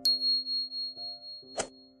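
Notification-bell 'ding' sound effect: one high bell tone that rings on with a wavering, pulsing level, with a short click about one and a half seconds in, over soft background music of held low notes.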